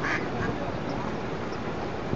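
Female mallard giving a short quack right at the start, a hen calling to her ducklings.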